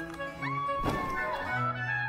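Background string music with a single dull thud just under a second in: a person falling onto a hard dance-studio floor.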